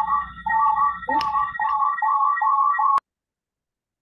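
Garbled electronic audio from a shared video over a video call: repeating warbling two-note tones, about two a second, with a click about a second in. It cuts off abruptly about three seconds in.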